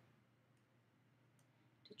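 Near silence: room tone with two faint clicks of a computer mouse, about half a second and a second and a half in.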